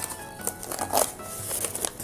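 Brown paper gift wrapping crinkling in short rustles as a small cardboard box is pulled out of it, over soft background music.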